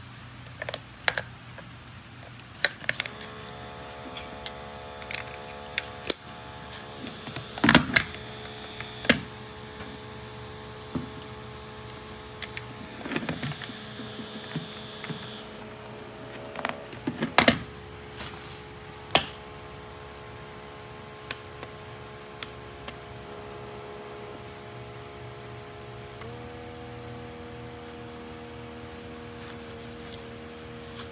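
Plastic clicks and knocks as AA batteries are fitted into a Konquest KBP-2704A blood pressure monitor and the unit and cuff are handled, over a steady low hum. About 26 seconds in, the monitor's small air pump starts with a steady buzzing hum as it begins inflating the cuff.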